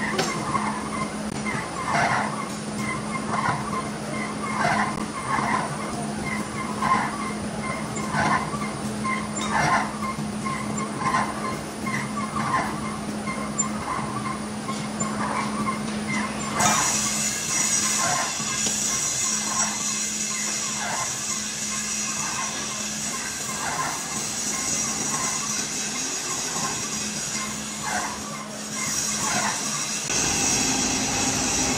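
Large old lathe running, turning a heavy steel shaft: a steady motor hum with a regular scraping noise about one and a half times a second, likely once per turn of the shaft. A high hiss joins about halfway through.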